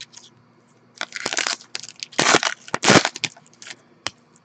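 Foil trading-card pack wrappers crinkling and crumpling as they are handled, in short noisy bursts: one about a second in, then louder ones around two and three seconds in.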